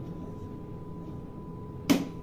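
Front-loading washing machine filling with water: a steady low rush with a faint steady tone. A single sharp knock near the end.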